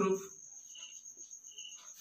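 A cricket chirping: a steady, high, finely pulsing trill.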